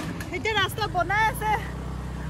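A person talking over the steady low hum of a motor scooter's engine while riding.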